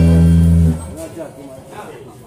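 A live band's closing chord, held low and steady, stops abruptly less than a second in. Faint voices follow.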